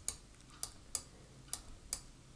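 Computer mouse clicking: five faint, short, sharp clicks at uneven intervals over two seconds.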